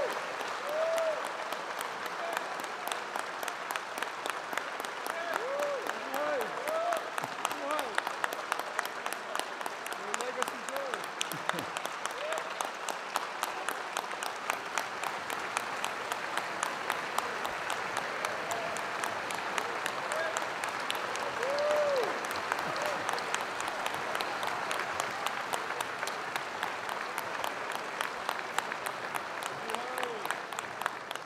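A large audience applauding steadily and at length, with the dense clatter of many hands clapping and no break.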